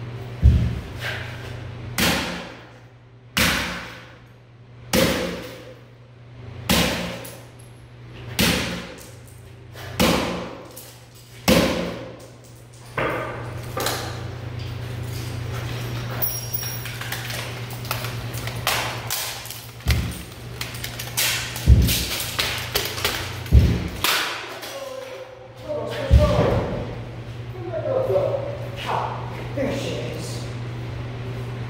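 Sledgehammer blows smashing a small object on a wooden stump block, a hard strike about every one and a half seconds for the first twelve seconds, ringing in a large hard-walled room. After that come lighter, irregular knocks, cracks and rattles of the broken pieces, over a steady low hum.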